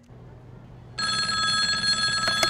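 Landline telephone ringing, a steady ring of several pitches at once that starts about a second in.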